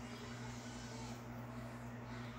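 Steady low electrical hum in a small room, with faint breathy noise that fades a little over a second in.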